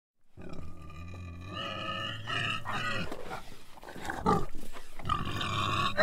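Domestic pig snorting and squealing. Pitched squealing grunts come first, then a run of short noisy snorts, and a louder drawn-out squeal starts about five seconds in.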